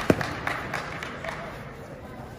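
Two grapplers scuffling on a foam competition mat, with one loud thud just after the start as one drops to his knees shooting for the legs. Several shorter sharp slaps follow over the murmur of a tournament hall.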